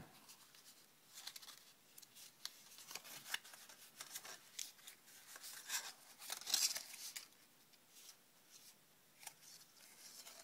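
Paper crab claw being squeezed and flexed by hand, with faint irregular rustles and crinkles of paper, loudest a little past the middle. The scored paper joint is being broken in so that the claw segments will move.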